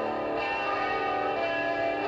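Rock song with electric guitar playing from a cassette on a portable radio-cassette player. Sustained, ringing guitar chords, with a new chord about half a second in.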